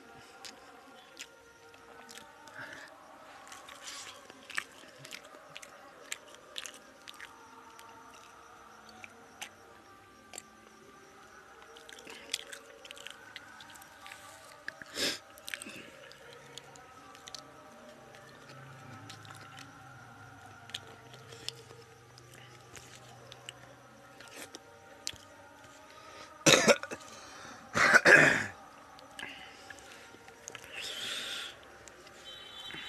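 Close-up eating sounds of a man eating chicken biryani with his hand: scattered small wet clicks and smacks of chewing and of fingers working rice and chicken on a paper plate. Near the end he clears his throat and coughs loudly twice.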